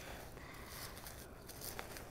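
Faint rustling and crumbling of potting soil as hands pull it off an echeveria's root ball, with one small click near the end.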